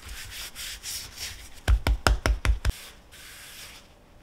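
Gloved hands rubbing flour over a block of noodle dough on a wooden board, a dry rubbing hiss. About halfway through comes a quick run of about six sharp pats of the hands on the dough, then the rubbing goes on briefly.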